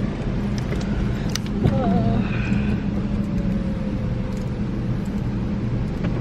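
Car engine idling, a steady low hum heard from inside the cabin.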